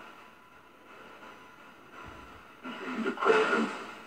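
SB7 spirit box sweeping radio stations: a low steady hiss, then near the end a short burst of a muffled, garbled voice fragment through its speaker. The ghost hunter hears it as a deep voice saying "say a prayer."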